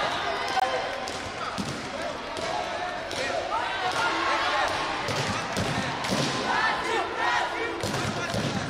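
People's voices calling out in a large sports hall, with scattered thumps and foot sounds on the competition mat.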